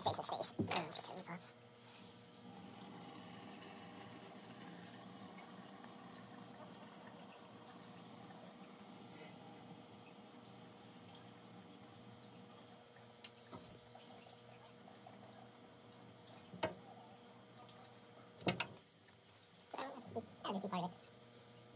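A can of Loctite expanding spray foam dispensing through its straw nozzle: a faint, steady hiss of foam running out for about ten seconds. A few short knocks follow near the end.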